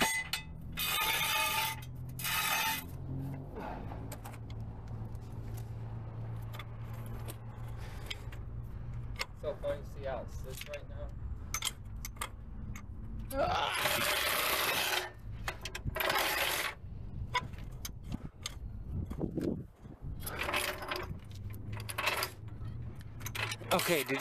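Steel hydraulic floor jack being worked and moved on concrete under a lifted car: several separate bursts of metallic rattling and scraping, a few seconds apart, over a low steady hum.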